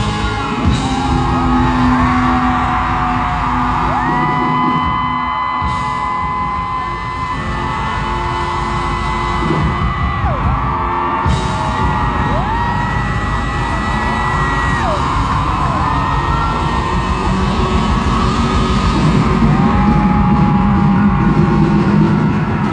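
Live rock band playing in a large hall, with long held notes that bend at their ends, and the crowd yelling and whooping over it.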